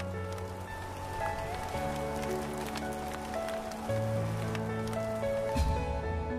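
Background music of slow, long-held notes that shift every second or two, with a faint pattering texture beneath.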